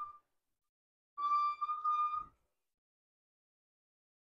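Electric RV awning motor running as the awning extends: a steady high whine, about a second long, that ends with a small click.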